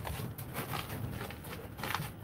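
Light scuffs and scattered knocks of someone moving and clambering through the cramped, debris-strewn space, with a sharper knock near the end.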